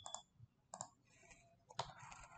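Three faint, spaced-out computer mouse clicks against near silence.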